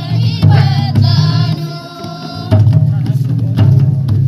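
A group of women singing a welcome song together to the beat of a two-headed barrel drum, the drumming coming in loud phrases about half a second in and again a little past halfway.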